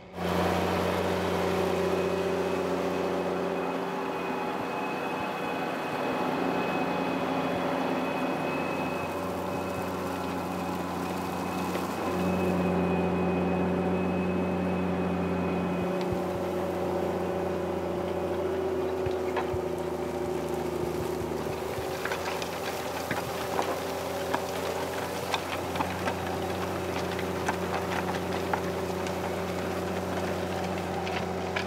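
Challenger MT765B tracked tractor's engine running steadily under load as it pulls an eight-furrow Grégoire Besson plough, with a faint high whine over it in the first half. From about two-thirds of the way through, close crackling of soil and stubble as the plough bodies turn the furrows.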